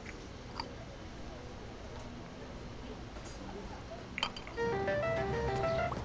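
A mobile phone ringing with a melodic ringtone, a run of short stepping notes, starting about four and a half seconds in. Before it there is only faint low background noise.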